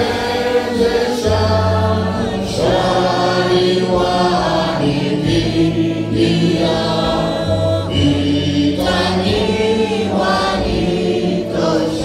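Choir singing a gospel song in several voices, over held low bass notes that change every second or two.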